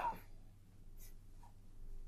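A man's voice ends a word, then a quiet pause in which a steady low electrical hum continues, with one faint, brief soft sound about a second in.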